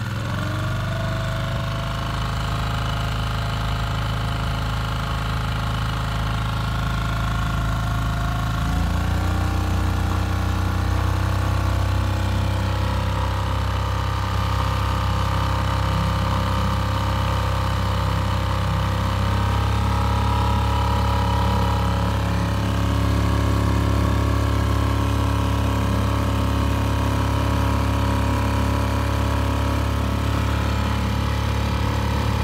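Tohatsu 6 hp four-stroke outboard motor running under way, its engine note stepping up twice, about 9 seconds and about 20 seconds in, as the throttle is opened from around 2000 rpm to about 4200 rpm, the most it reaches on its propeller.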